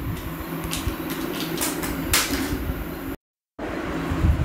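A steady low hum with scattered faint rustles and clicks, cut off by a sudden total dropout of about half a second near the end.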